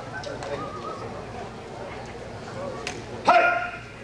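Quiet room murmur, then a sharp snap and, about three seconds in, a single loud, short shout from a martial artist as the group readies for a form.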